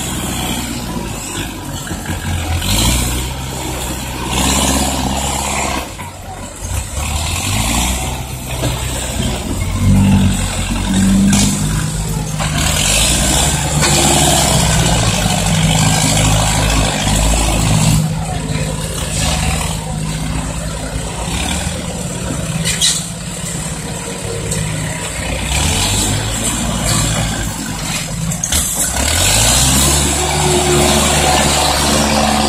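Diesel engine of a loaded six-wheel dump truck running as it drives across loose dirt, its pitch rising and falling with the throttle and climbing about ten seconds in.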